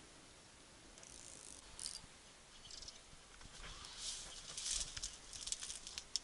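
Faint rustling and crackling of dry grass and twigs brushed past underfoot and by the body, in short bursts about a second in and again through the second half, with a few light clicks near the end.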